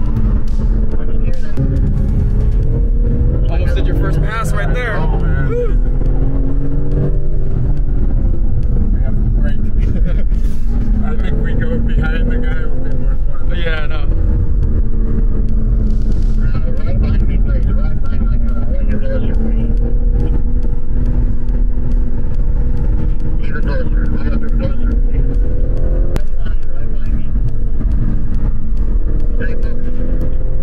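BMW M car's engine and road rumble heard from inside the cabin at track speed, the engine note rising and falling with the revs through the corners, mixed with background music.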